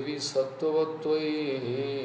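A man chanting Sanskrit invocation prayers in a slow, held recitation tone, the voice stepping between a few sustained notes.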